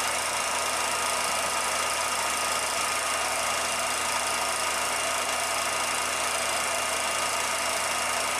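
A 16mm film projector running steadily: an even mechanical whirr and hiss with a faint constant hum.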